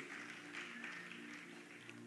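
Faint background music: a few soft held low notes, as from a sustained keyboard underlay.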